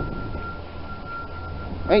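A low rumble with one steady high tone held through it and no change.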